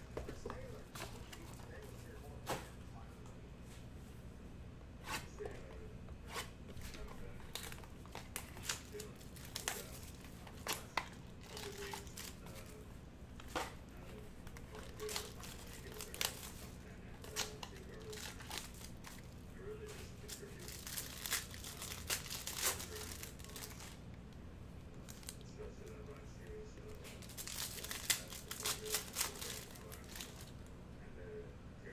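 A trading card box being opened and its plastic pack wrapping torn and crinkled by hand: scattered sharp crackles and clicks, with denser bursts of crinkling twice in the second half.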